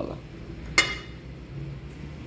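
A single sharp metallic clink about a second in, ringing briefly, over a low steady hum.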